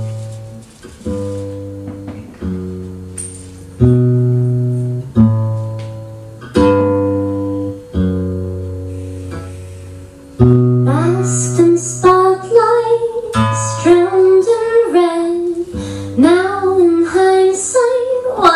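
Steel-string acoustic guitar opening a song with single strummed chords about every second and a half, each left to ring and fade. A little past halfway a woman's singing voice comes in over the guitar.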